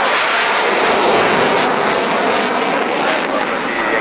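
Jet noise from a Dassault Rafale's twin Snecma M88-2 turbofans as the fighter flies its display, loud and steady throughout.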